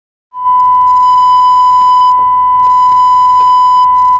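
Loud, steady 1 kHz sine test tone, starting about a third of a second in after silence. It is the reference tone that goes with colour bars when a broadcast station signs off the air.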